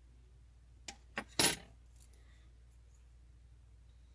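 Small metal tools handled on a fly-tying bench, heading into the whip finish: two light clicks about a second in, a short metallic clatter just after, and a faint tick near two seconds.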